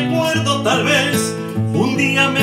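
Nylon-string classical guitar played in chords, accompanying a man's singing voice.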